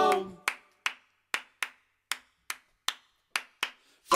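Nine sharp hand claps in a syncopated rhythm during a break where the band stops playing. A sung note dies away at the start.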